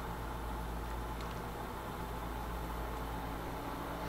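Steady mains hum and cooling-fan whir from a Mohawk 10 HF linear amplifier powered through a variac with its output tubes disconnected. It runs evenly with no pops or arcing.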